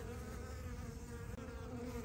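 Honey bees from a swarm buzzing close by: a steady, even hum.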